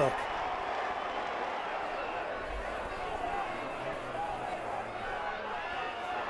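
Rugby league stadium crowd: a steady hubbub with faint distant shouts.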